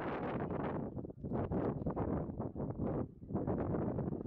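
Wind buffeting the microphone in gusts: a rough rushing rumble that drops away briefly about a second in and again a little after three seconds.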